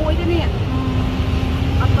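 A woman speaking, who draws out one long level hum or vowel for about a second before speaking again, over a steady low rumble.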